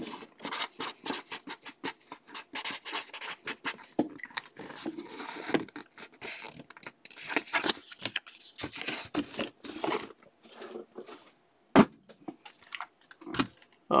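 Scratchy handling noises of a cardboard box being worked with the hands: a marker scratching on the cardboard, then the box being shifted and moved off. One sharp knock about twelve seconds in is the loudest sound.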